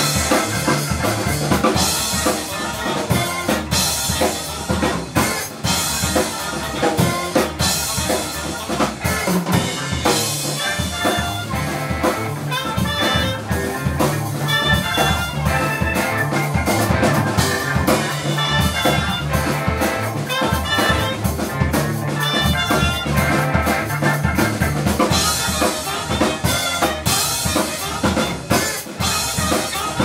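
Funk band playing live: a saxophone carries the melody over a steady drum-kit groove, electric bass, keyboard and electric guitar.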